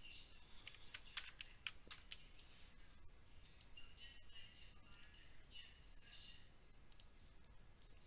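Faint clicks of a computer keyboard and mouse: several quick keystrokes in the first two seconds, then scattered softer clicks.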